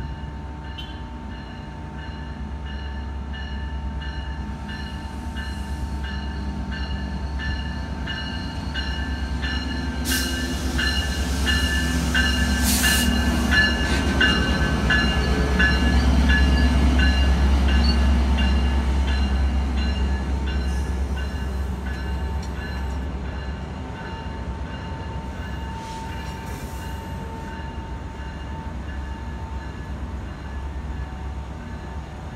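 Diesel-hauled Metra commuter train passing close by. The locomotive's deep rumble builds to its loudest about halfway through as it goes past, then eases as the bilevel coaches roll by. A steady high tone sounds throughout, and two sharp hissing bursts come about a third of the way in.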